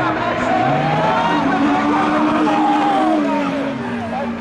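Super Modified rallycross cars' engines running hard as two cars race past, the pitch climbing about a second in, holding, then dropping a little after three seconds.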